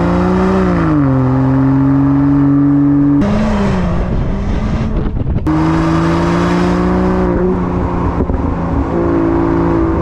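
Land Rover Defender P400's 3-litre turbocharged inline-six running through a QuickSilver performance exhaust while the car drives. The engine note dips and holds steady, turns rougher for a couple of seconds in the middle, then settles into a steady drone that steps up and down in pitch a few times.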